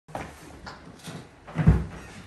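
A few short knocks and bumps from handling a baby grand piano and its moving gear, the loudest a low, heavy thud near the end.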